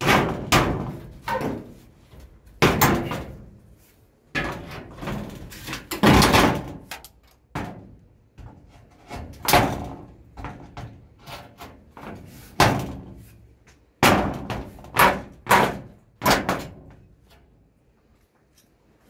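Corrugated roofing sheet banging and rattling in a string of irregular, loud knocks, each with a short ringing tail, as it is pushed and wired up by hand.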